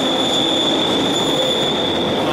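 London Underground train wheels squealing on the rails: a steady high-pitched screech over the loud running noise of the train.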